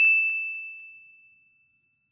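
A single bright, bell-like ding added in editing as a transition sound effect. It is struck once and rings out, fading away within about a second and a half.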